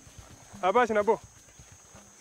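A person gives a brief laugh, about half a second in. Before and after it are faint low thumps of footsteps tramping through dry grass.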